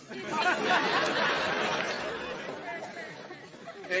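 Studio audience laughing after a punchline: a dense crowd laugh that swells within the first second and slowly dies away.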